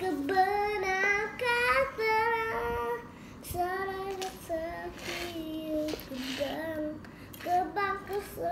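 A young boy singing unaccompanied, holding each note for about half a second to a second, louder for the first three seconds and softer after.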